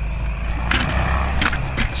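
Low, steady rumble of wind buffeting the camera's microphone, with a few sharp clicks and knocks as the handheld camera is moved and turned.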